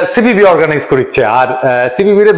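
Only speech: a man talking without pause.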